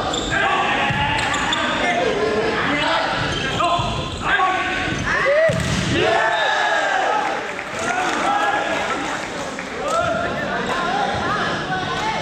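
Volleyball rally in a reverberant sports hall: the ball is struck hard several times, including spikes near the start and about six seconds in, amid shouts from players and spectators.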